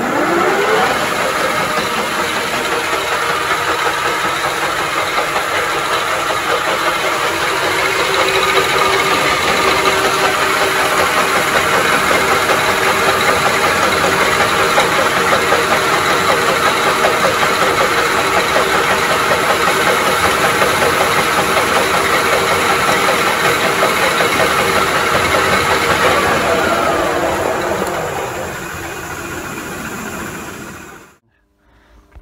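A 1K62 screw-cutting lathe running, its geared headstock giving a steady whine with the chuck spinning as a small part is turned. It spins up with a rising whine at the start and winds down with a falling whine about 27 seconds in.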